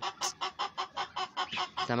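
Domestic chickens clucking in a quick, even series of short clucks, about five a second.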